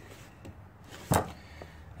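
Faint handling of fabric on a plastic armrest frame, with one sharp click about a second in as the old stapled-on fabric is pulled away.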